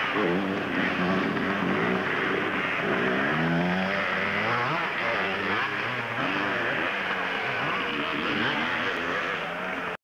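Yamaha PW50's small two-stroke single-cylinder engine revving up and down in uneven swells while the bike is stuck in a muddy puddle.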